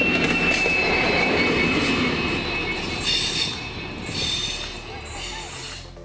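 Passenger train with a diesel locomotive passing close by: a steady rumble of wheels on the rails with a high, steady wheel squeal over the first couple of seconds. The sound grows fainter in the second half as the train moves off.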